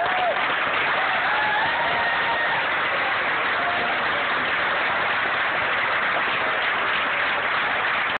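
Audience applause, dense and steady, with a few voices whooping above it in the first couple of seconds.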